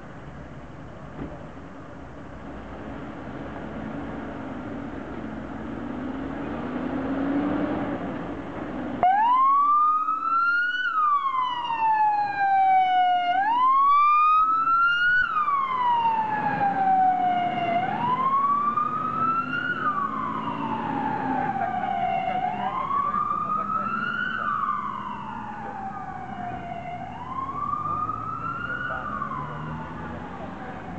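Mercedes-Benz Atego fire engine's diesel engine running and growing louder as it pulls out. About nine seconds in, its siren switches on with a wail that rises and falls about every four and a half seconds, then grows softer near the end as the truck drives away.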